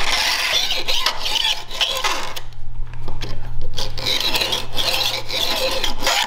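Metal hand file scraping back and forth over the teeth of an old bandsaw blade section, dulling the teeth and taking out their set so the edge is no longer sharp. Repeated strokes with a brief lull about halfway through.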